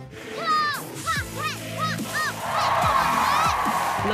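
A run of short, high, honking whoops of laughter, each rising and falling, followed about halfway through by a burst of audience cheering and applause.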